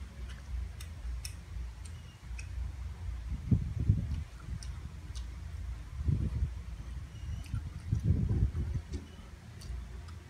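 A person eating close to the microphone: chewing with light clicks, and three louder low bursts about three and a half, six and eight seconds in.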